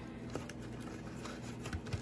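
Faint rustling and light ticks of a cardboard box of amla powder being opened and handled, with a soft knock near the end.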